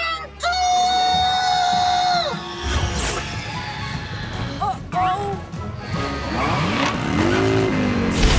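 Cartoon soundtrack: background score music mixed with action sound effects. It opens with a long held tone lasting nearly two seconds.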